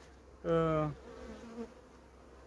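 Honeybees buzzing over an open hive: a loud, steady buzz from a bee close by for about half a second, followed by a fainter buzz.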